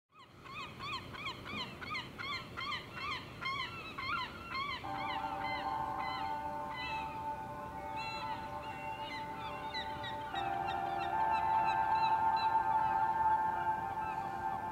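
A flock of birds calling in quick, overlapping cries, several a second, thinning out after about five seconds. A sustained ambient music drone enters about five seconds in and swells louder near ten seconds.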